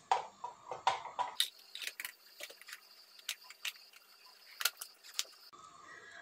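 White plastic lid being fitted and closed on a hand-operated food chopper bowl: a series of irregular light plastic clicks and knocks.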